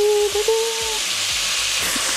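Diced vegetables sizzling as they sauté in olive oil in a pot, with chopped red chili dropped in. A steady pitched tone sounds over the sizzle for about the first second.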